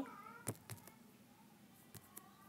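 A few faint, light taps over quiet room tone, about half a second in, again shortly after and once near the end, consistent with fingertips tapping a phone's touchscreen while typing. At the very start the tail of a spoken word trails off.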